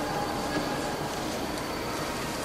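The last held chord of a piano trio (piano, violin and cello) fading out in a reverberant church, its final tone dying away about half a second in, leaving steady room noise.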